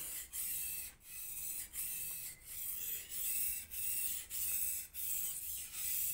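Steel blade of a single bevel knife scraped back and forth on a sharpening stone in even strokes, about one and a half a second, a hissy grinding sound. The strokes remove the burr (turned steel) as the last step of sharpening.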